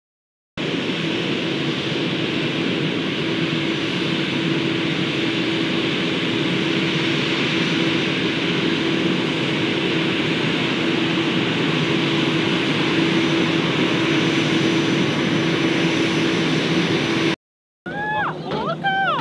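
Twin jet engines of an Allegiant Airbus A320-family airliner running steadily at taxi power: an even rush with a steady low hum. It starts about half a second in and cuts off abruptly shortly before the end.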